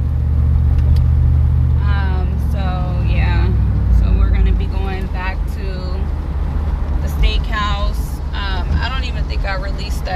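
Low road and engine rumble inside a moving car's cabin, easing about four and a half seconds in, with a voice talking over it twice.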